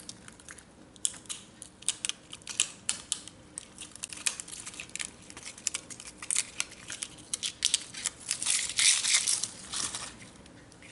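Stiff adhesive-backed metallic foil crinkling and crackling as it is peeled away from its paper liner by hand, a quick run of small crackles that grows loudest near the end.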